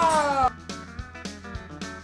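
A loud, high vocal cry sliding down in pitch for about half a second, then quieter background music with a soft, regular beat.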